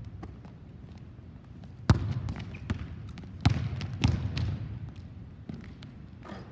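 A basketball being dribbled on a hardwood gym floor: a few sharp bounces, the loudest about two seconds in, each ringing out in the large echoing hall.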